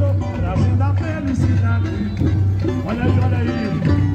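Samba parade music: a sung melody over a band with a constant deep bass, playing continuously.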